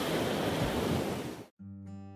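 Ocean-wave rush sound effect, an even wash of water noise that cuts off suddenly about one and a half seconds in. Acoustic guitar strumming begins right after.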